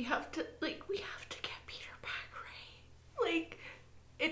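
A woman whispering in short, broken phrases that cannot be made out, her voice strained and tearful, with a faint steady low hum underneath.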